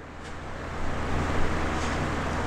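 A steady rushing noise with a low hum underneath, growing louder over the first second and then holding level.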